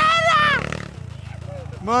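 A man's drawn-out shout that ends about half a second in, then a small dirt bike engine running at low revs in the background, quieter than the voices.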